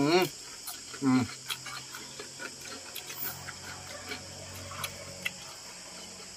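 Close-up crunchy chewing of crispy pork-rind chicharon, a scatter of small crackles, with a short hummed "mm" at the start and another about a second in. Crickets chirr steadily in the background.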